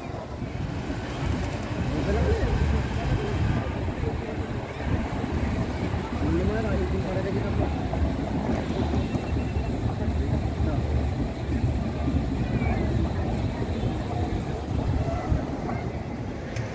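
Outdoor ambience of wind rumbling on the microphone, with indistinct voices of people nearby.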